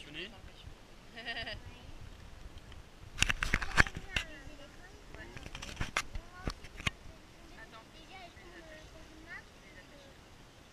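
Small children's high voices, with a burst of sharp knocks and clatter about three seconds in and a few more knocks around six seconds.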